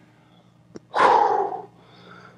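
A man's loud, breathy exhale, out of breath from a hard set of core exercises, lasting under a second and starting about a second in, just after a short click.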